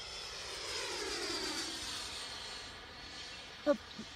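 Electric ducted fan of a Freewing 90mm F-16 RC jet whining as it flies past, its pitch sliding down steadily and the sound easing off as it moves away.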